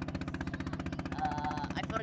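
A boat's engine running steadily under way, a low throb with a rapid, even pulse. A faint voice is heard briefly in the background partway through.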